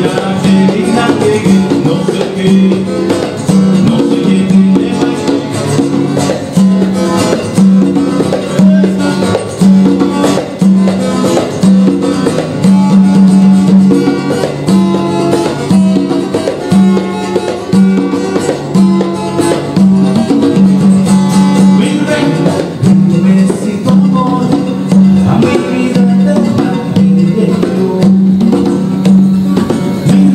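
Live Latin band music, largely instrumental: acoustic guitar over a repeating low bass figure, with hand-drum strokes from congas.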